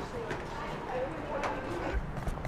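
Footsteps of hard-soled shoes on pavement, with indistinct voices in the background.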